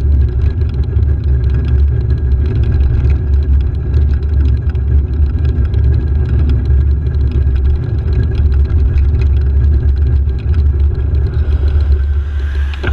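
Steady loud low rumble of wind and running noise on a handlebar-mounted camera moving along a road, with no change in pitch.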